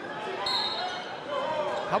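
Gym sound of a basketball game: a steady crowd murmur with faint voices, and a brief high squeak about half a second in. A commentator's voice cuts in at the very end.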